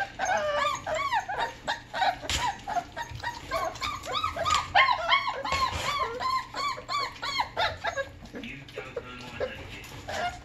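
Pit bull puppies whining and yipping, a rapid run of short rising-and-falling cries, two or three a second, that thins out after about seven seconds.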